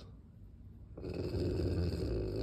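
A Rottweiler growling low and rough while mouthing a person's hand. The growl starts about a second in, after a brief hush.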